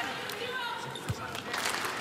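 A basketball bounced on the hardwood court, with a sharp thud about a second in, as the shooter dribbles before a free throw. Voices murmur in the arena behind it.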